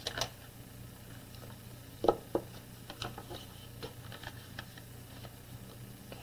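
Card stock and a plastic stamping platform being handled: a few scattered soft taps and clicks, the sharpest about two seconds in, over a low steady hum.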